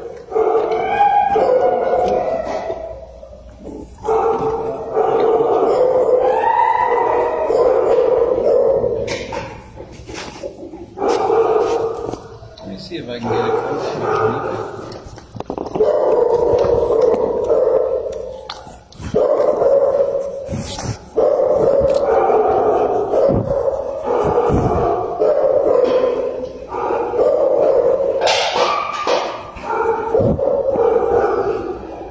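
Shelter dogs barking in their kennels, a near-continuous din with whining and howling notes that rise and fall in pitch.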